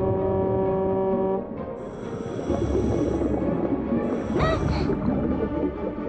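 An air horn sounding underwater: one steady horn tone that cuts off about a second and a half in. Then a rougher, churning noise follows, with a short rising swoop about four and a half seconds in.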